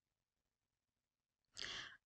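Near silence, then about one and a half seconds in, a woman's short, audible intake of breath.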